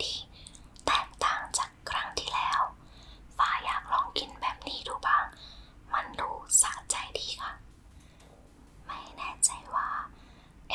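A woman whispering in short phrases, with a longer pause about three-quarters of the way through.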